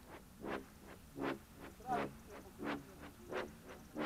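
Faint, evenly paced sounds of someone walking across ploughed ground: soft footfalls with breathing, about one every 0.7 seconds.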